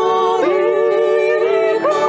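Three women's voices singing a Ukrainian carol in close harmony, holding long notes with vibrato over bandura accompaniment; the chord shifts about half a second in.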